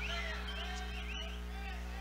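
Quiet stage background between the singer's remarks: a steady low hum from the stage sound system, with faint, distant crowd voices over it.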